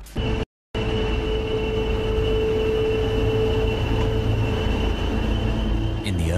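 A train running: a steady rumble with a held hum and a higher whine over it, the hum dying away near the end. It begins after a brief dead-silent break.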